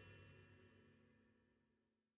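Near silence in the gap between two songs, with only the last faint trace of the previous song's final chord dying away.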